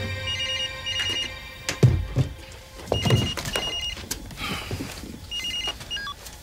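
Telephone ringing in a double ring, three times about two and a half seconds apart. A few dull thuds come about two seconds in.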